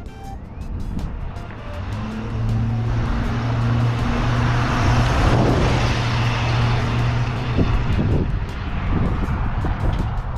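1986 Chevrolet C10 pickup with its 305 cubic-inch V8 driving past at low speed. A low, steady engine hum and tyre noise swell to their loudest about halfway through, then fade as the truck pulls away.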